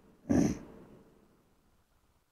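A single short, noisy breath from a man close to a lapel microphone, lasting about half a second, followed by near silence.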